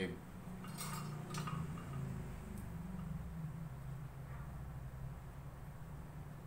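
Light clicks of small metal parts being handled while soldering a dynamic microphone's lead wires: two quick taps about a second and a second and a half in, over a steady low hum.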